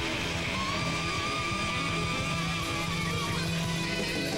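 Live rock band playing with electric guitars, bass and drums, a held lead note wavering slightly over the band from about half a second in until past three seconds.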